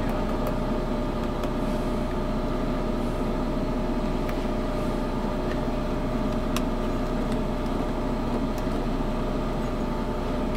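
Steady mechanical drone of running machinery, even in level throughout, with a constant hum note in it. A few faint ticks come now and then as multimeter probes are handled on the terminals.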